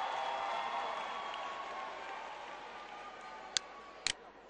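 Arena crowd murmur, slowly dying away, with one sharp click near the end.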